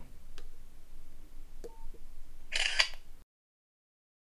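Nokia 6234 mobile phone taking a photo: a few faint clicks and a brief beep, then the camera's shutter sound from the phone's speaker as a short burst about two and a half seconds in. The sound cuts off abruptly soon after.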